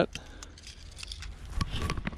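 Handling noise of a hard plastic glide-bait lure with its treble hooks hanging free: scattered light clicks and scrapes as it is moved in the hand, with a couple of dull bumps near the end.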